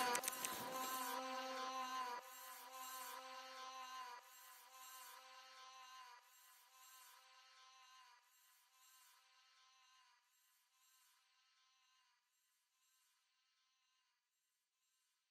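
Faint, steady, high-pitched buzz of a quadcopter drone's propellers, dying away in steps over the first eight seconds or so.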